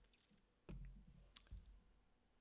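Near silence with a few faint clicks and soft knocks: one low thump under a second in, then a sharp click and a second knock shortly after.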